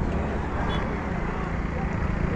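Highway traffic noise with a motor vehicle's engine running close by, and people's voices in the background.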